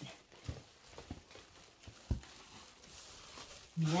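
Faint handling noise, with a few soft thumps about half a second, one second and two seconds in.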